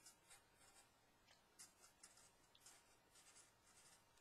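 Very faint scratching of a felt-tip marker writing on paper, in short separate strokes.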